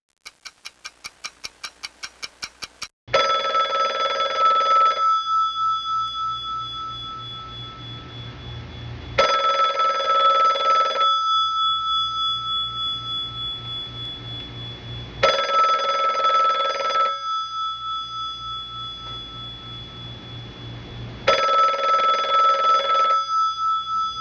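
A fast ringing trill of about fourteen pulses, like a telephone bell, for about three seconds. It is followed by four heavy bell strokes about six seconds apart, each fading into a long pulsing hum.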